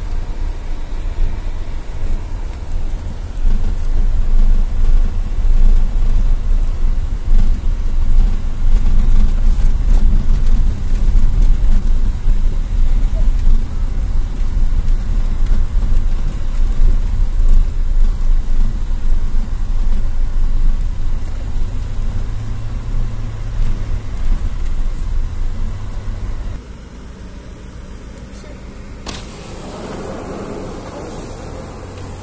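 Inside a car's cabin driving over a rough unpaved dirt road: a loud, steady low rumble of tyres and engine. The rumble drops in level about 26 seconds in.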